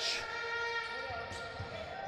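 A basketball being dribbled on a hardwood court, a few dull bounces about a second in, over a faint steady hum.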